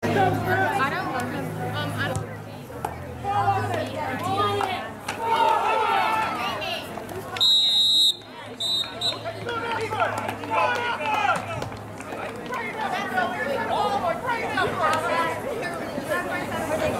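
Indistinct chatter of many voices from the sideline crowd, cheerleaders and players. About halfway through, a referee's whistle sounds one blast, then a shorter second one, as the play is blown dead.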